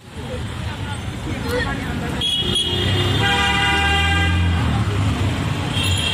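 A vehicle horn sounds in street traffic, held steady for about two seconds around the middle, with shorter honks before and after it. Voices of passers-by and traffic noise run throughout.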